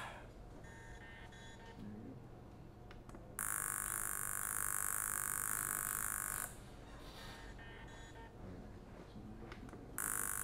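SciAps Z-200 handheld laser analyzer running a test shot on a stainless steel sample: a steady high buzz that starts a few seconds in and cuts off abruptly about three seconds later.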